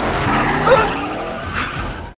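Film sound mix of a car engine running with short tyre squeals, the loudest about three quarters of a second in.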